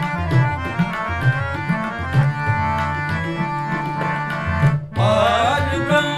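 Kirtan music: a harmonium holding a melody over a tabla beat with deep bass-drum strokes and sharp treble strikes. The music breaks off for a moment just before the end, then comes back in.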